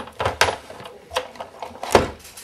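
A handful of sharp plastic clicks and knocks from a Big Shot manual die-cutting and embossing machine as the plate sandwich is set on its platform and fed in toward the crank rollers.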